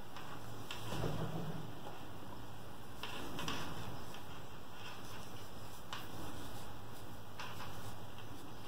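Faint handling sounds of a metal crochet hook and yarn being worked by hand: a few soft brushes and light scrapes as treble crochet stitches are made, over steady room tone.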